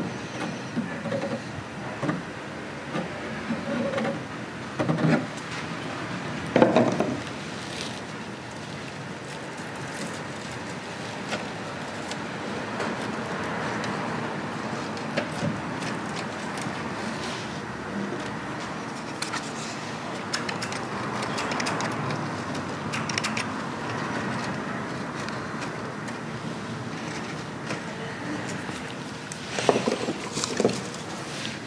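Light handling sounds of hands pressing dry craft moss onto a model house's eaves: soft rustles and small knocks, the loudest knock about seven seconds in, over a steady background noise.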